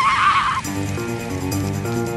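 A baby dinosaur's creature-cry sound effect: a high, wavering, whinny-like squeal that ends about half a second in. Background music with a stepping melody follows.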